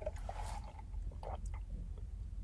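Sipping an iced coffee through a plastic straw: a few short, faint slurps and swallows in the first second and a half.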